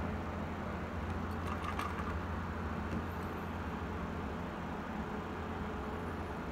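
Steady low background hum, with a few faint light clicks about one and a half to two seconds in.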